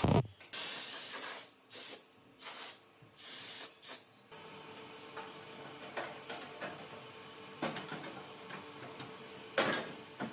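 Several short bursts of hissing, each up to about a second long, in the first four seconds. Then a faint steady hum with scattered knocks and taps on car-body sheet metal, the loudest just before the end.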